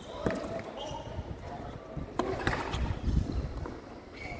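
Tennis ball struck by rackets and bouncing on a hard court during a rally: a sharp hit about a quarter second in, then a few more hits close together around the middle.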